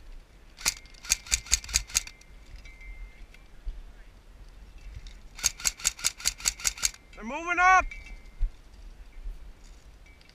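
Airsoft gun firing two rapid strings of single shots, about six a second, seven or eight shots about a second in and eight or nine more about five seconds in. A short shout with rising-then-falling pitch follows the second string.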